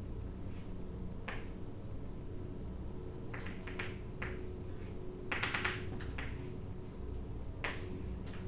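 Chalk writing and drawing on a blackboard: short scratchy strokes and taps in clusters, the longest run about five and a half seconds in, over a faint steady room hum.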